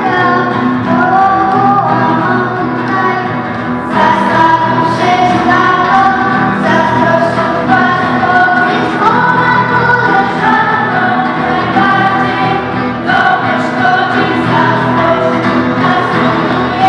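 A girls' vocal group singing a song together in chorus, over a steady instrumental accompaniment.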